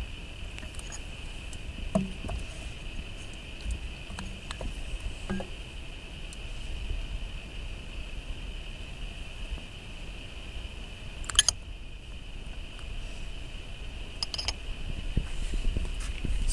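Scattered light clicks and rubs from an audiometer earphone being handled and seated on an artificial-ear coupler, with one sharper click a little past the middle, over a steady faint high-pitched hiss. No test tone sounds: the audiometer's tone had been left off.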